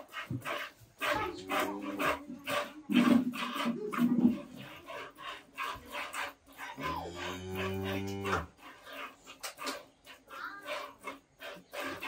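Milk spurting in short repeated squirts into a plastic bucket as a cow is milked by hand. About seven seconds in, a cow lows once: one long, low call of under two seconds.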